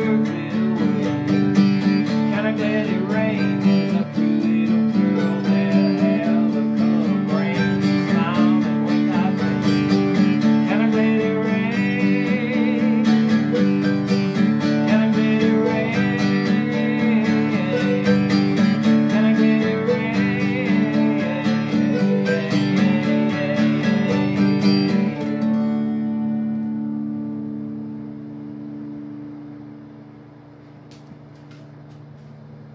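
Live duet of an acoustic guitar and a second plucked string instrument, strumming chords under fast picked notes. About 25 seconds in, the playing stops on a final chord that rings out and fades away.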